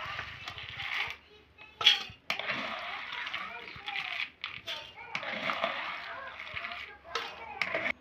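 Soaked whole black lentils and kidney beans being scooped with a ladle and tipped from a bowl into an aluminium pressure cooker. It comes as four or five wet, rattling pours, with a sharp clink of the ladle about two seconds in and another near the end.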